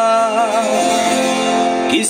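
A live folk song from a small acoustic ensemble: a voice holds a wavering note over sustained accordion chords and acoustic guitar, between two sung lines.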